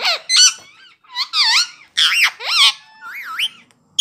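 Indian ringneck parakeet giving a run of high, squeaky chattering calls. There are several short phrases, each swooping up and down in pitch.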